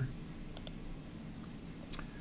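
Faint clicks from a computer key or mouse button, two close together about half a second in and one near the end, over quiet room tone; the last click comes as the presentation slide advances.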